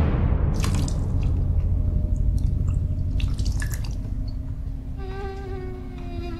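Water dripping and splashing into a metal basin as a cloth is wrung out over it, in short bursts, over a low rumbling drone that slowly fades. About five seconds in, a held musical note comes in.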